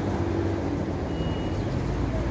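Steady low hum of a vehicle's engine or motor running, with a short high-pitched tone about a second in.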